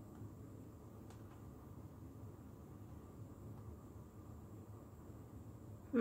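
Quiet room tone: a faint, steady low hum, with one faint click about a second in.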